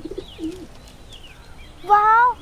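Pigeon cooing in a low, wavering call during the first part, with faint high bird chirps behind it.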